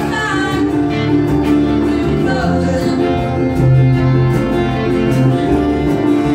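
Live country band playing: fiddle, guitars and keyboard together, with a sung vocal line.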